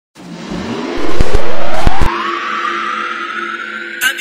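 Intro sound effect: a whoosh rising steadily in pitch over a held low drone. It is broken by a very loud boom with sharp cracks from about one to two seconds in.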